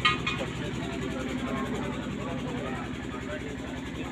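A steady low engine-like drone runs throughout under faint background voices of a crowd, with a short sharp sound right at the start.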